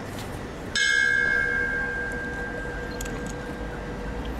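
A bell is struck once about a second in and rings on, its clear tones fading slowly: a memorial toll in the pause after a victim's name is read out.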